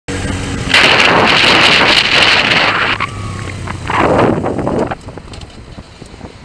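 Wind buffeting the camera microphone of a moving motorcycle in two loud stretches, over the steady hum of the bike's engine. It drops much quieter about five seconds in as the motorcycle slows.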